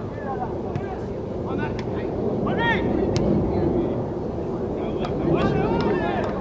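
Players shouting short calls across a soccer pitch, distant and carried over a steady low noise of wind on the microphone. A single sharp tap comes about three seconds in.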